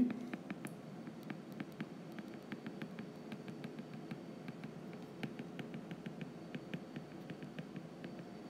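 Stylus tip tapping and scratching on a tablet's glass screen during handwriting: faint, rapid, irregular clicks, several a second.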